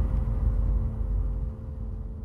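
The low rumble of a cinematic boom dying away, fading and dropping off about one and a half seconds in, over a faint sustained musical drone.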